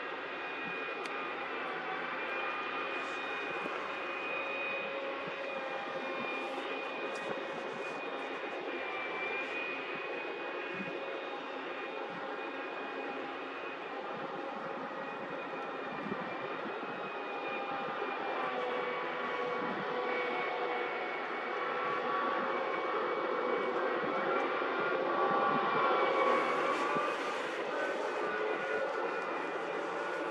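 Diesel construction machinery running steadily during concrete pouring, the concrete pump and truck mixer on a work barge: a continuous engine drone with held whining tones. It grows a little louder toward the end, where the pitch of the whine wavers.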